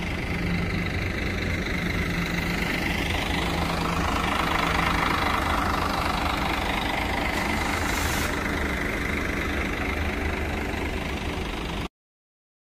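Diesel engine of an intercity coach running as the bus manoeuvres at low speed, a steady hum that grows a little louder towards the middle, with a brief hiss about eight seconds in.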